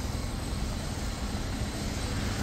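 Steady low rumble of outdoor urban background noise, even throughout with no distinct events.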